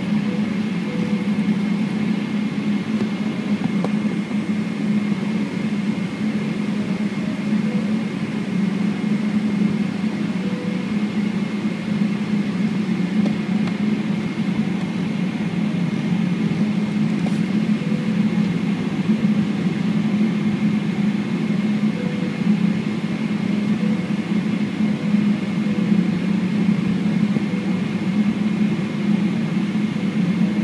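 Steady cabin noise of a Boeing 777-300ER taxiing with its GE90-115B engines at idle, an even hum with a faint constant high whine running through it.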